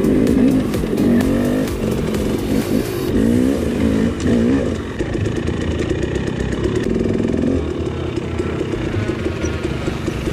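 Dirt bike engine revving as the bike climbs a rough rock trail, its pitch rising and falling several times over the first few seconds, then running steadier under throttle.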